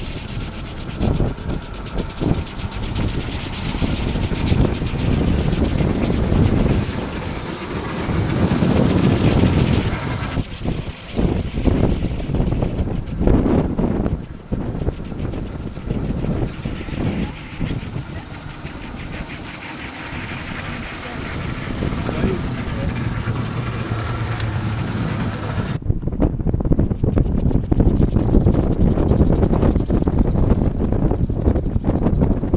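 Wind buffeting the microphone in uneven gusts, with people's voices at times in the background.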